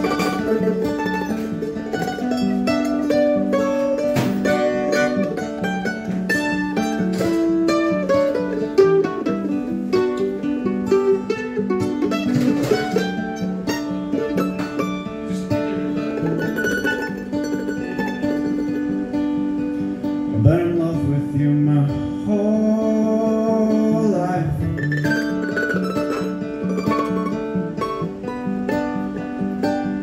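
Mandolin and acoustic guitar playing an instrumental passage in a live folk song. The mandolin picks a line of quick single notes over the strummed acoustic guitar.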